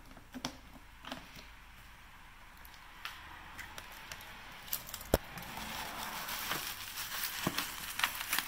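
A few light clicks of a key and latch as a plastic storage-compartment lid is unlocked and opened, and one sharp click about five seconds in. Then bubble wrap crinkling as it is handled, getting louder toward the end.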